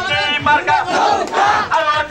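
Crowd of men shouting in quick, rhythmic calls, roughly two or three a second, like campaign slogan chanting.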